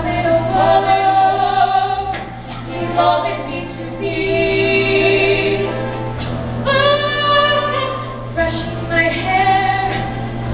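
Live musical-theatre singing: female voices in a stage duet, with several long held notes, heard from the audience in the hall.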